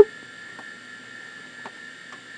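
Steady hum of running computer equipment, with a few fixed tones and a couple of faint clicks, after a brief vocal sound right at the start.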